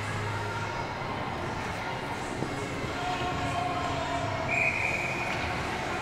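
Steady ice-arena background noise during a stoppage in play. A few faint held tones rise above it about halfway through.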